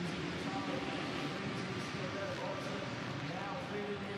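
Supercross motorcycle engines revving up and down as riders take the jumps, over steady stadium crowd noise.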